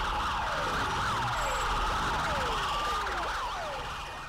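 Emergency-vehicle siren sound effect: several overlapping siren tones, with falling sweeps repeating about every half second, beginning to fade out near the end.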